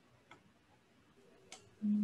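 Near silence broken by two faint short clicks a little over a second apart, then a voice begins near the end.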